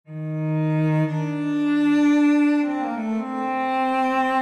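Slow, dark contemporary classical music on low bowed strings, playing long held notes that swell in at the start and move to new pitches about two and a half seconds in.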